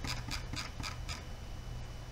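Faint ticking and rubbing of a computer mouse scroll wheel as a document is scrolled, over a steady low hum.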